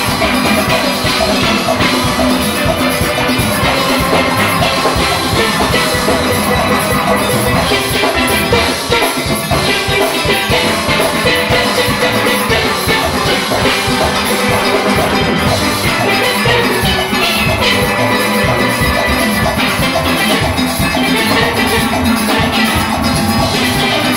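A full steel orchestra playing live: many steelpans carrying the tune over a drum kit and percussion, loud and unbroken.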